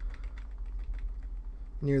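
Computer keyboard keys tapped in a quick, irregular run, with a steady low hum underneath.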